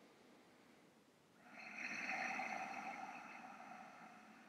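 A person's long, slow breath through a narrowed throat, the ujjayi breath with its whispering sound. It starts about a second and a half in and fades away near the end.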